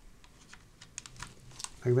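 Light, irregular plastic clicks and taps of a small HDMI plug being handled and pushed into a camcorder's port, a few more of them in the second half.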